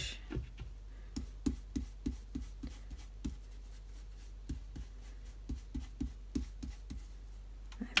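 Round stencil brush dabbing ink onto cardstock through a plastic stencil and into an ink pad: a run of soft, short taps about three to four a second, with a pause of about a second near the middle.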